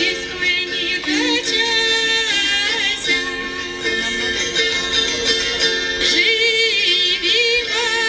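A woman singing a Russian folk wedding song, accompanying herself on wing-shaped Pskov gusli, a plucked psaltery. Her voice glides and wavers in pitch over the steady ringing of the strings.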